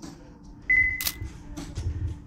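A short, high electronic beep lasting about half a second, followed by a sharp click, then low thumps.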